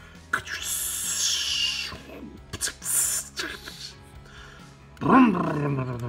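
A falling, hissing whoosh as the toy hauler's ramp is lowered, then a loud, engine-like roar about five seconds in that drops in pitch and settles into a low steady drone: a mouth-made monster-truck engine sound as the toy truck starts to roll off.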